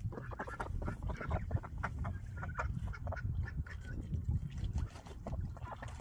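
Domestic ducks splashing and dabbling in a shallow plastic pond: frequent short splashes and water sloshing, with a few brief quacks.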